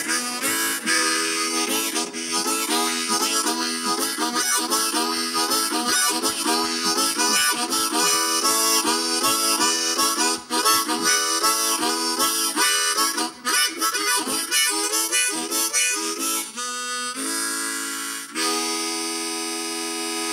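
Solo harmonica played into a microphone: quick, constantly changing chords and runs, ending on a long held chord near the end.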